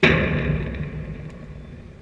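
A sudden loud impact close to the microphone, ringing and rattling away over about a second and a half with a low rumble under it.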